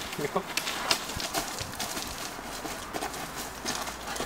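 Footsteps crunching and shuffling on dry leaf litter and gravel, a run of irregular short crunches as two people step around each other.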